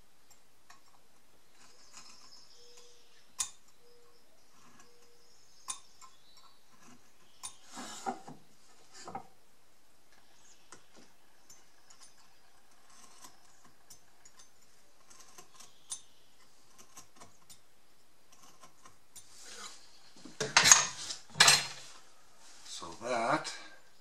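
Marking knife scoring lines in maple against a steel combination square: scattered quiet clicks and light scratches, with small metallic clinks as the square is shifted. Near the end there is a louder cluster of knocks and clatter as the board and square are handled.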